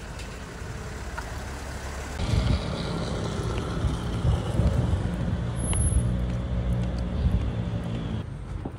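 City street traffic: a steady low rumble of car engines and road noise, becoming louder about two seconds in.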